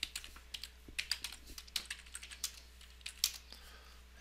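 Typing on a computer keyboard: a fast, irregular run of keystrokes entering short terminal commands, which stops shortly before the end.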